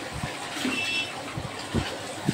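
A wet cloth being hand-washed in a steel basin of water: water sloshing and splashing, with a few soft low thuds as the cloth is lifted and dunked.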